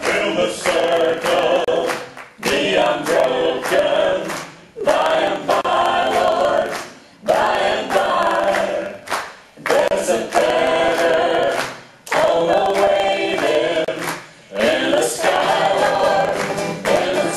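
Several voices singing together in harmony without instruments, in phrases of about two and a half seconds with short breaks between them.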